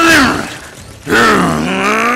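A person's voice groaning with effort during a fight. A drawn-out groan falls in pitch and trails off just after the start, and a second one begins about a second in, dipping and then rising.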